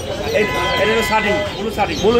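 Several people talking at once in a busy shop, with a steady high tone held for about a second in the middle.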